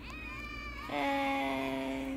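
A meow-like call. It starts with a high rising note, then at about a second in drops to a long held lower note, which is the loudest part.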